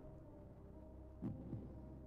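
Low steady hum under quiet room tone, with one short low-pitched sound just past a second in.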